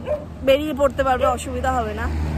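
A woman talking over the steady low rumble of a moving motor scooter.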